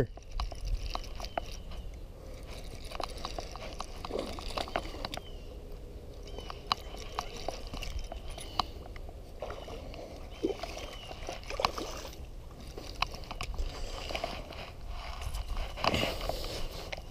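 A hooked bass being played and reeled in on a spinning reel: scattered clicks and ticks from the reel and rod handling, with water sloshing as the fish fights at the surface, over a steady low rumble.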